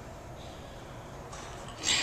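A woman breathing hard after double-unders, then a short, loud, forceful exhale near the end as she pulls a barbell into a power snatch.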